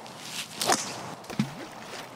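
A golf club swung at a ball off the tee: a quick swish and strike under a second in. The tee shot is a poor one that ends up in the water.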